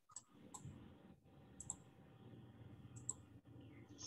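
Faint clicks of a computer mouse, several of them, some in quick pairs, over a faint low hum.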